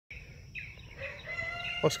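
A rooster crowing faintly, one long call that is still going when a man's voice starts near the end, with a few small bird chirps before it.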